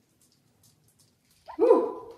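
A dog's single short bark, about a second and a half in, after near silence.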